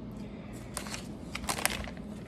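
Hands pressing and smoothing a sheet of paper over a glued, fabric-covered book board: soft paper handling with a few short crinkles and ticks, about a second in and again shortly after.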